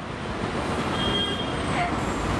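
Steady road traffic noise, with a thin high tone that holds for just under a second around the middle.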